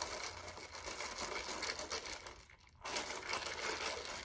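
Ice rattling in a plastic iced-drink cup as a straw stirs it: a dense, crackly clatter of ice against the plastic that pauses briefly a little past halfway, then resumes.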